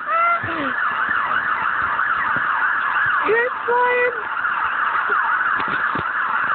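A siren yelping, its pitch sweeping rapidly up and down several times a second without a break, with a brief shout partway through.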